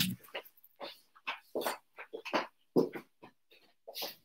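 A person getting up from a chair and moving away: a string of short, irregular creaks and steps, about two a second.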